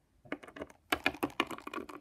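Plastic Littlest Pet Shop toy figure tapped and hopped along a hard floor: a quick, irregular run of light clicks, starting about a third of a second in.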